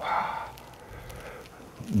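A man's voice trails off in the first half second, then quiet room tone in a lull between spoken instructions.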